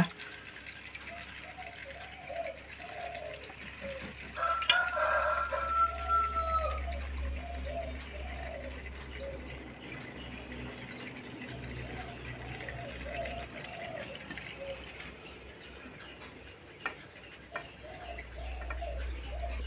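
Aquarium water trickling and splashing as a swing-arm hydrometer is dipped into a saltwater tank and fills. The water is loudest about four to seven seconds in.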